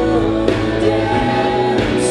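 Live rock band playing a song, with singing over electric guitars, bass and a drum kit.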